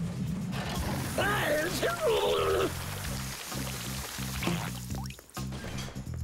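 Cartoon background music with a stepping bass line. Over it, a character makes wordless wavering vocal sounds in the first half, and a rushing, pouring hiss fades out after about three seconds.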